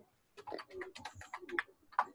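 A young child making playful cooing and clicking noises with her mouth, a quick string of short sounds heard over a video call.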